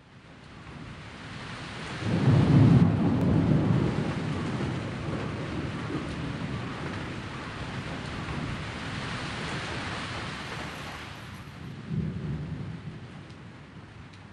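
Steady rain falling, fading in at the start, with a loud rumble of thunder about two seconds in and a shorter rumble near the end.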